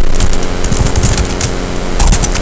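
Computer keyboard being typed on: an irregular run of sharp key clicks over a steady hum.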